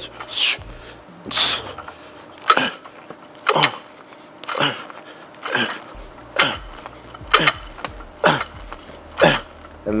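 A set of ten fast barbell bench-press reps: a sharp, forceful exhale on each push, about one a second, with metal clinks from the iron plates on the bar.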